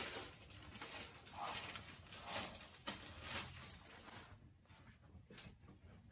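A clear plastic sleeve crinkling and rustling as a plaque is slid out of it by hand: faint and uneven, dying down over the last couple of seconds.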